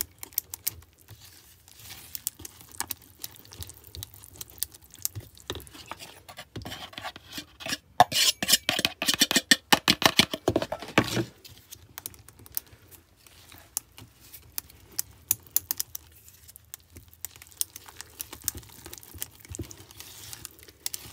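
Whisk clicking and scraping against a plastic mixing container as flour is stirred into a wet banana batter, in quick irregular strokes. The strokes are busiest and loudest for a few seconds in the middle.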